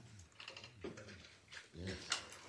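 Faint clicking of laptop keyboard typing, a few quick keystrokes, over a low steady room hum, with a single spoken "yes" near the end.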